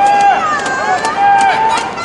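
Roadside spectators shouting encouragement to passing race runners: two long drawn-out calls over general crowd noise, with a quick regular patter of running shoes striking the asphalt.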